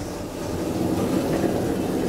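Automatic sliding car doors of an IGV roped-hydraulic elevator opening at a floor: a steady rumbling slide that grows louder as the panels travel.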